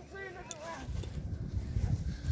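A soft voice briefly in the first second, then a low rumble on the microphone, typical of wind or handling noise.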